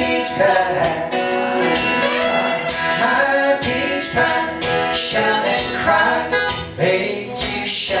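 Live folk song: a steel-string acoustic guitar played in a steady rhythm, with a woman singing over it.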